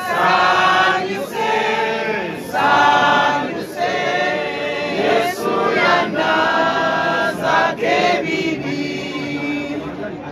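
A group of voices singing a hymn together, in phrases of a second or two with brief pauses between them.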